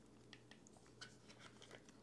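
Near silence, with a few faint small clicks and rubs as the DJI Osmo Pocket camera is slid by hand into a snug-fitting case.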